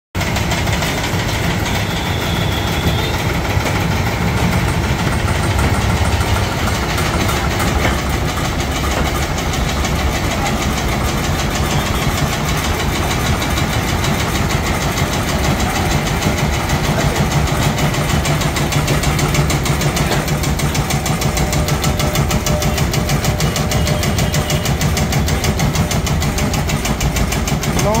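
Motor-driven 9-inch tobacco (khaini) cutting machine running steadily, its blade chopping dry tobacco leaves in a fast, even rhythm.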